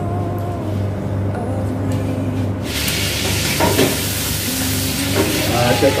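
Soft background music, then about halfway through a steady hiss sets in abruptly and keeps going; a voice comes in briefly near the end.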